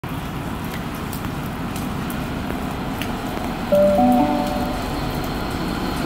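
Steady hiss of rain, then about two-thirds of the way through a railway station public-address chime: a short series of electronic tones stepping upward in pitch, the signal that a platform announcement is about to be made.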